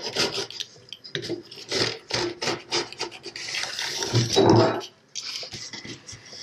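Metal rotary cord setter rolled along the groove of a wooden screen-printing frame, pressing cord and polyester mesh into the notch: a quick series of rasping, rubbing strokes, with one louder, heavier rub about four seconds in.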